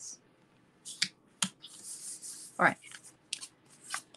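Paper and cardstock being handled and pressed into place: a few sharp paper clicks and a brief hissing rustle of card sliding.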